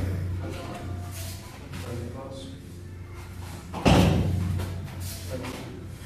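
A single heavy thud about four seconds in, with a short echo of the hall, as partners practising a grappling technique hit the foam training mats. A steady low hum runs underneath.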